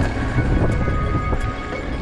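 A mountain bike rattling and rumbling as it rolls down a rough dirt trail, with wind buffeting the microphone, under background music.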